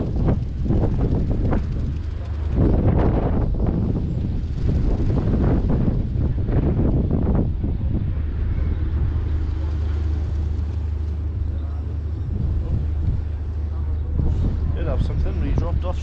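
Strong wind gusting and buffeting the microphone for the first half, over a steady low hum of a moored fishing trawler's engine or machinery, which stands out on its own once the gusts ease about halfway through.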